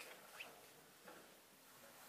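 Near silence: quiet room tone, with a few very faint brief sounds.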